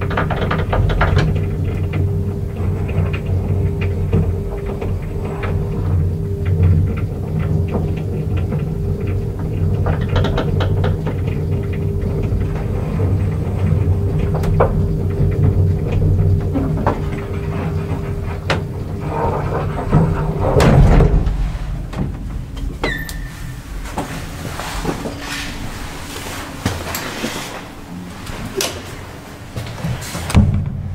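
Old JÄRNH traction elevator heard from inside the moving car: a steady low machine hum with small clicks and rattles. About twenty seconds in, a loud heavy thump as the car comes to a stop, then quieter clanks and knocks.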